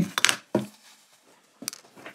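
A few light clicks and taps from handling the small metal housing of a DisplayPort switch, with near quiet between them.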